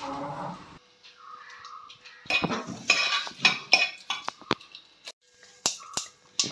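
Metal kitchenware clinking and clattering: a quick run of sharp ringing strikes begins about two seconds in, then thins to a few single clinks.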